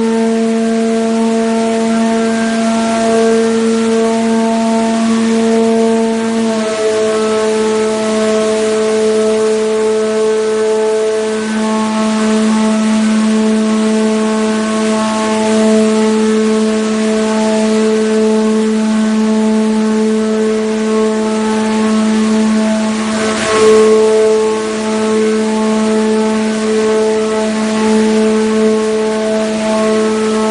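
High-speed five-ply corrugated paperboard production line running: a loud, steady machine hum with one strong low tone and its overtones. The hum steps slightly in pitch about six seconds in, and a short noisy burst comes a little past the three-quarter mark.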